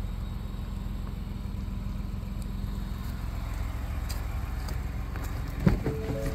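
Pickup truck engine idling steadily, with a short knock near the end.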